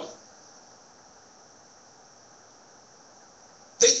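A pause in a man's speech, filled by a steady faint high hiss of room tone and recording noise. It runs between the end of a spoken "um" at the very start and speech resuming near the end.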